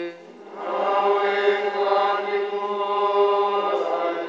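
Congregation singing a short chanted response in unison, a sustained, held phrase that begins about half a second in and fades near the end, answering the priest's sung announcement of the Gospel.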